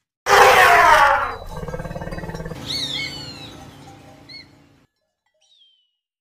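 Zebra calling: a loud, harsh bray starts suddenly and gives way to a quicker, pulsing run of calls with high squeals, dying away about five seconds in. A faint, high, falling cry comes near the end.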